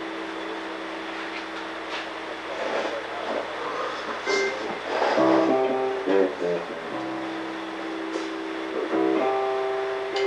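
Live rock band playing an instrumental passage with no vocals: long held chords that shift to moving notes in the middle and then settle again, over electric guitar and drums with cymbal strikes.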